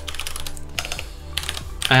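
Typing on a computer keyboard: a quick run of keystrokes, several clicks a second.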